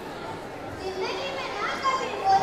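Children's voices: a child speaking in a high voice, starting about a second in, over a low hum of hall noise.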